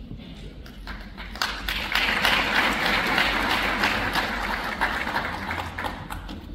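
Audience applauding: faint at first, swelling into dense clapping about a second and a half in, then thinning out near the end.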